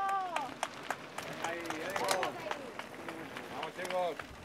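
Shouted calls of encouragement, several drawn-out cries rising and falling in pitch, mixed with scattered sharp claps or clicks as mountain bikers ride past on gravel.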